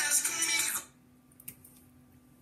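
Musical mobile-phone ringtone playing, then cut off suddenly just under a second in as the call is answered, leaving near silence with one faint click.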